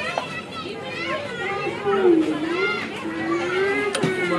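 Overlapping voices of adults and children chattering, with no other clear sound standing out.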